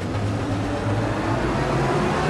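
A steady, low rumbling drone with a hiss over it, a dramatic sound effect laid under a title card.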